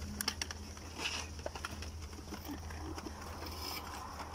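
Scuffle as police officers tug a woman's arm on a motorcycle: short clicks and rustling of clothes and handling, thickest in the first second, then faint voices, over a steady low hum.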